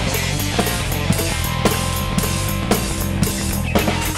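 A full rock drum kit played hard over a heavy progressive-rock backing track with electric guitar. Strong accents land about twice a second.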